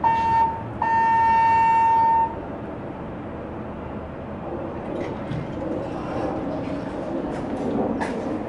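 Elevator hall lantern chime announcing the arrival of a ThyssenKrupp hydraulic elevator car going down: a short electronic tone, then a longer held one of the same pitch. Near the end the car's doors slide open with light clicks.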